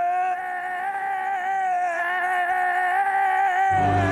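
A man's long sustained shout held at a steady high pitch, cut off just before the end as the band's music comes in with a heavy bass.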